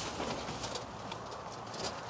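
Cork squeaking and creaking against the glass neck as it is levered slowly out of a wine bottle with a waiter's corkscrew, with a few faint clicks.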